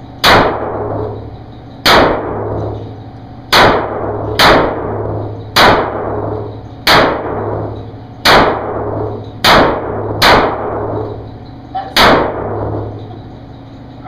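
Handgun shots fired at a paced rate, about ten in all, one every second or so, each followed by a long echo off the walls of a tunnel-shaped concrete range.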